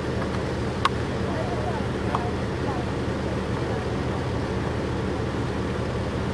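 A low, steady engine hum, with faint voices in the background and a single sharp click a little under a second in.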